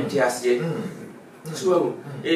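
A man speaking, with a short pause about halfway through.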